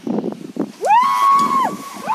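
A woman's long scream while in freefall on a rope jump: it rises quickly, holds one high pitch for most of a second, then drops away near the end, over low wind rush.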